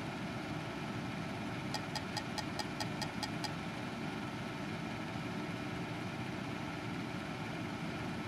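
Steady low background hum and hiss, with a quick run of about nine light clicks, roughly five a second, about two seconds in.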